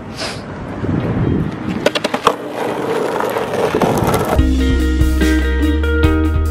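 Skateboard wheels rolling over rough pavement, with a few sharp clacks of the board about two seconds in. Music with a steady bass comes in at about four seconds.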